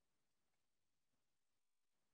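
Near silence: a silent screen-recording track with no audible sound.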